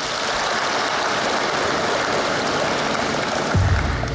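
Audience applauding, swelling in and holding steady, with a low thump near the end.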